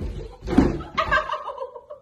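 A woman slides off a stool onto a wooden floor with a heavy thump and scuffle, the loudest moment about half a second in. About a second in comes a high, wavering cry from her that falls in pitch.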